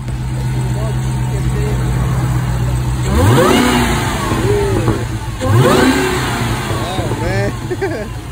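Dodge Challenger SRT's supercharged V8 idling, then revved hard twice, about three seconds in and again about five and a half seconds in, each rev rising sharply and falling back to idle. Voices come in near the end.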